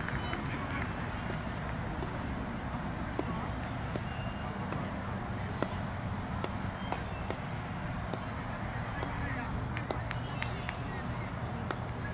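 Open-field ambience between deliveries at a cricket match: faint, indistinct voices of players over a steady low rumble, with scattered small clicks.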